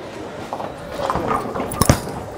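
Footsteps of a bowler's approach, then a sharp double thud near the end as a Roto Grip Hustle X-Ray bowling ball is released and lands on the lane.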